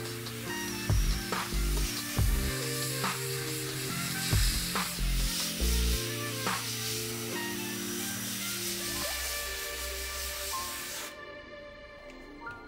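Background music with a bass beat, over a continuous hiss of an airbrush spraying metallic paint onto a resin model. The hiss cuts off suddenly about eleven seconds in.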